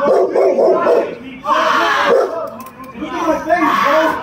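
A person yelling and wailing loudly without clear words, the cries rising and falling in pitch and running together in long stretches.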